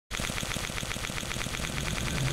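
Rapid, even electronic pulsing, about a dozen ticks a second, opening an intro music sting.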